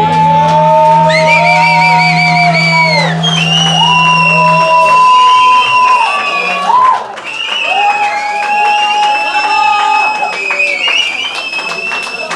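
The end of a live rock song: the band's last chord rings out over a low bass note that stops about five seconds in, while the audience cheers and whoops, with scattered clapping through the second half.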